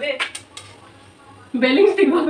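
A metal slotted spoon clinks against the side of a metal wok a few times in quick succession while stirring food frying in oil.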